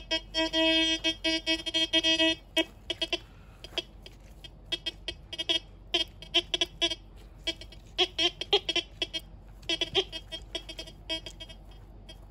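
Chinese TX-850 metal detector's signal tones: one held electronic tone for about two seconds, then short intermittent beeps of shifting pitch as the coil sweeps over the hole. The owner suspects these are responses to buried graphite rods, not metal.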